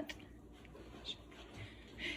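Faint scraping of a metal pastry blender pressing through flour and margarine in a glass bowl.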